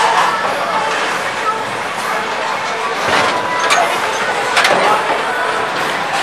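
Busy bowling alley: crowd chatter and general hubbub in a large hall, with a few sharp clatters a little after three seconds in and again around four and a half seconds.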